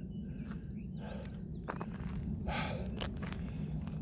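Footsteps of a person walking on cracked asphalt: a few separate steps and scuffs over a steady low rumble.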